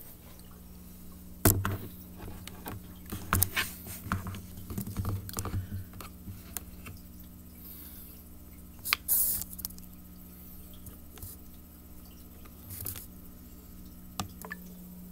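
Handling noise of a handheld camera being moved along a lit aquarium: scattered clicks, knocks and rustles, the loudest about a second and a half in and again near nine seconds. Under them runs a steady low hum from the running tank equipment.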